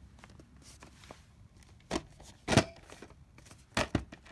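VHS tape cases being handled and set down on a surface: three short knocks, the loudest about two and a half seconds in, after a quiet first two seconds.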